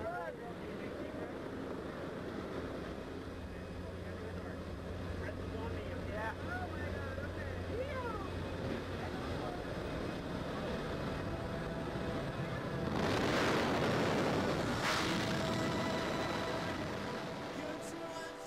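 Jump plane's engine and propeller drone heard inside the cabin, steady, with faint voices. About 13 seconds in a loud rush of wind comes in as the jump door is open, lasting several seconds.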